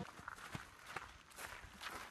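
Faint footsteps of people walking on a dirt forest trail, a few soft steps.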